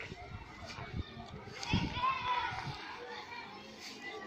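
Distant children's voices and chatter, indistinct, carrying across open ground, loudest about halfway through. A few short low thumps sit underneath.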